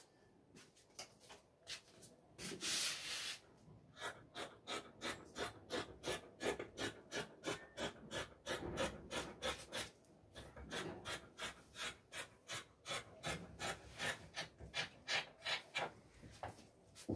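Scissors cutting through fabric in a steady run of snips, about three a second, with a brief pause midway. A short rubbing sound comes about three seconds in, before the cutting starts.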